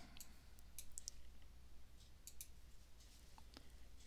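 Faint clicks of a computer mouse, a handful spread irregularly over a few seconds, over a low steady hum.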